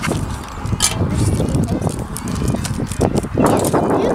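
Wind rumbling on the microphone, with crinkles and small clicks of plastic toy packaging being handled and cut open with scissors.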